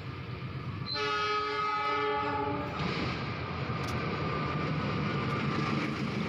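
Diesel locomotive's air horn sounding one long blast of about two seconds, starting about a second in, as the train approaches. Under it and after it, the locomotive's engine and the train's wheels on the rails make a steady rumble that builds slightly as it draws near.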